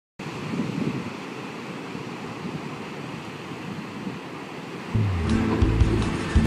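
Ocean waves breaking on a rocky shore, a steady rush of surf. About five seconds in, music with a deep bass line starts and covers it.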